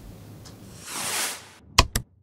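Logo-sting sound effect: a swelling whoosh of noise followed by two sharp hits in quick succession near the end.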